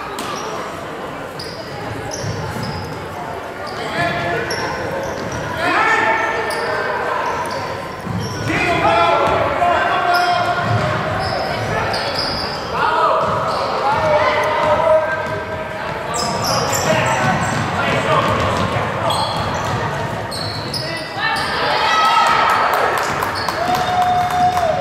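A basketball bouncing on a hardwood gym floor, with spectators and players shouting and calling out on and off throughout, echoing in a large gymnasium.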